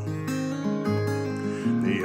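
Acoustic guitar with a capo, playing chords alone with no voice; the bass note changes about every second.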